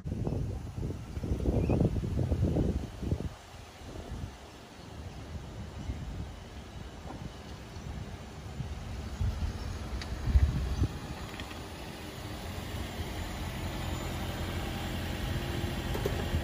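Wind buffeting the microphone outdoors: irregular low gusts for the first few seconds, settling into a steady outdoor background rumble, with a couple of faint knocks about ten seconds in.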